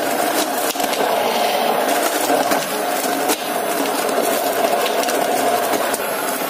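Electric hand blender running steadily in a steel bowl of mango, milk and ice cubes. Irregular clicks and clatter come from the ice knocking against the blade and bowl as it is crushed.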